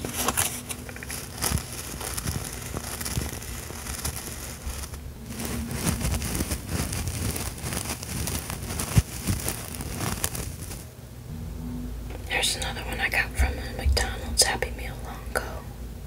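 Close-miked rustling and crinkling as a Beanie Baby plush toy and its tag are turned over in the hand, in many small irregular scrapes and clicks. A brief lull comes about two-thirds of the way in, followed by a denser patch of handling.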